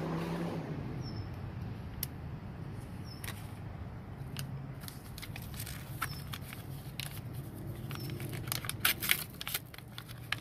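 Paper seed packets being handled, crinkled and tapped as small seeds are shaken out into a plastic dish: scattered sharp clicks, more of them close together near the end. A low steady hum underneath.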